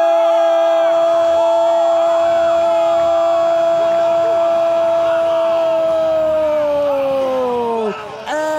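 A Brazilian TV football commentator's long goal cry, 'Gooool!', held on one steady pitch and sagging in pitch just before it ends near the end, with other voices cheering faintly underneath.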